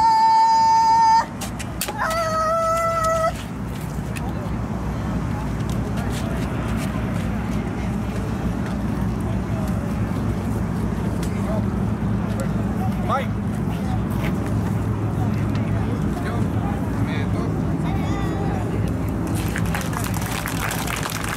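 Two long held kiai shouts from kendo fighters: the first ends about a second in, the second, lower one follows about two seconds in and lasts about a second. After that a steady background murmur of an outdoor crowd, with a few faint clicks.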